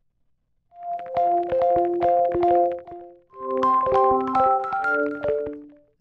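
Tape-loop sampled instrument from the Kontakt library Tapes 01 being auditioned: held keyboard-like notes in two short phrases with a scatter of sharp clicks over them, starting under a second in. The second phrase, about three seconds in, has more notes and sits higher.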